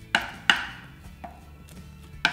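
Two sharp taps of a metal icing spatula against the cake board near the start, about a third of a second apart, while a buttercream crumb coat is spread around a cake.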